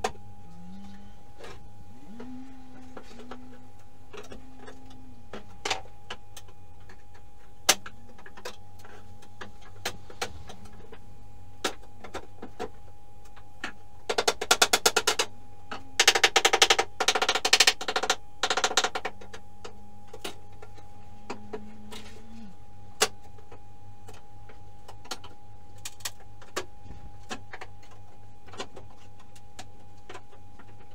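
Pry bar working wooden subfloor boards loose: scattered sharp knocks and cracks, with a dense run of rapid knocking and rattling about halfway through, which is the loudest part.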